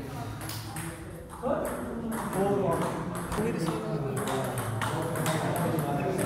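Table tennis ball clicking off rubber-faced rackets and the table during a serve and rally: a quick run of sharp, light taps. Voices talk over them from about a second and a half in.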